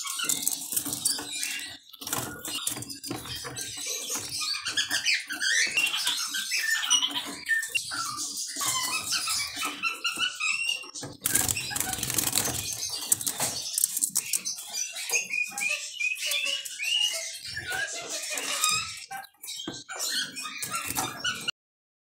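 A European goldfinch fluttering about a wire cage: repeated quick wingbeats and the clatter of hops and landings on perches and mesh, mixed with short chirping calls from the caged birds.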